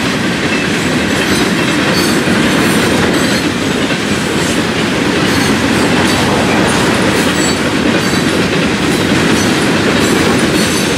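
Loaded Florida East Coast Railway rock hopper cars rolling past at close range: a steady rumble of steel wheels on rail with light, repeated clicking from the trucks.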